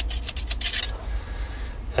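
Quick run of small metallic clicks and rattles in the first second, from a steel tape measure being handled and pulled away from a gearbox input shaft, then only a low background rumble.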